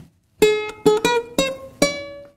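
Ukulele strings plucked one at a time: about five single notes in quick succession after a brief pause, each ringing and fading, the last one ringing on.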